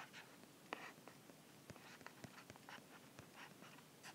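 Faint, irregular taps and short scratches of a stylus writing on a tablet.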